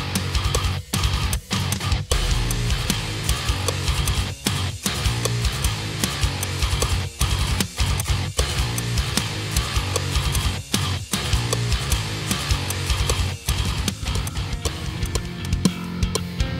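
Heavy metal track with low, down-tuned eight-string guitar chugging and a drum kit, cut by short, sudden stops every second or two in a stop-start rhythm.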